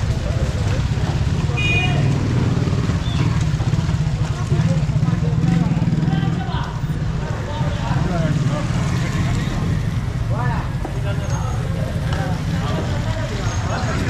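Busy market street: motorcycle engines running past with a steady low rumble, louder in the middle, and indistinct voices of people around.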